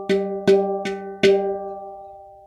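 Small steel tongue drum struck in a steady pulse: four notes about 0.4 s apart, each ringing on. The last note is left to fade out.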